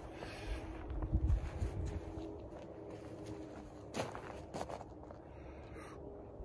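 Footsteps of a person walking over grass, uneven thuds strongest in the first two seconds, with a couple of sharp clicks about four seconds in.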